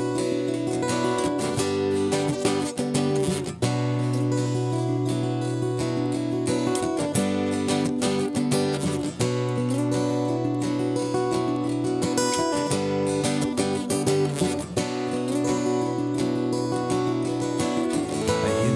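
Acoustic guitar strumming chords in a song's instrumental intro, with brief breaks in the strumming about three and a half and nine seconds in.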